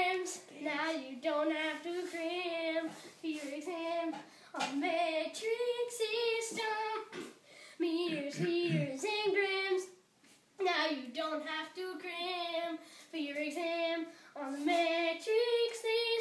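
A boy singing a melody without accompaniment, in long held notes that waver in pitch, with a short break about ten seconds in.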